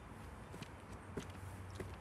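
Footsteps on railway ballast gravel: a few faint steps about half a second apart.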